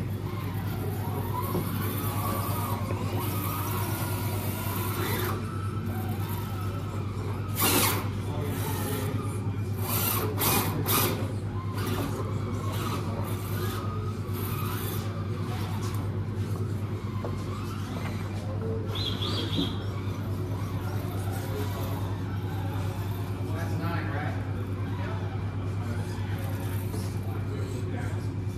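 Radio-controlled rock crawler with four-wheel steering working slowly over logs and rocks. Its tyres and chassis knock sharply on wood and rock, once about eight seconds in and in a quick cluster around ten to eleven seconds, over a low steady hum.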